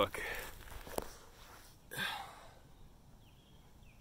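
Handling noise of a handheld camera microphone as it is carried and lowered: a rustle, a sharp click about a second in, a short brush near two seconds, then faint outdoor quiet.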